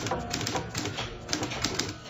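Typewriter keys clacking in a quick, irregular run of strokes: a police report being typed.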